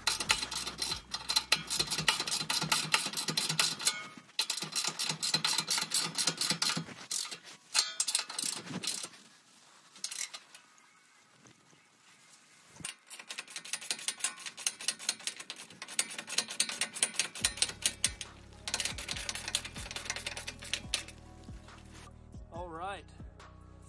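Socket ratchet wrench clicking rapidly in runs of a few seconds each while tightening skid plate bolts, with a pause of a few seconds in the middle.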